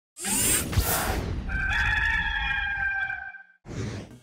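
A rooster crowing: one long, held call that fades out, after a loud opening rush of noise. A fresh whoosh starts just before the end.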